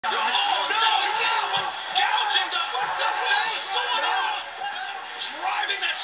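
Wrestling television broadcast heard through a TV speaker: excited voices over steady arena crowd noise.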